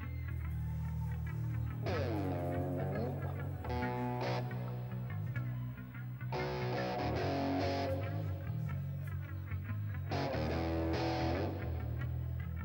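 Live rock band playing an instrumental passage without vocals. A steady electric bass line runs underneath, and electric guitar phrases come in and drop out every few seconds.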